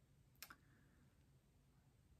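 Near silence: room tone, with a faint double click about half a second in.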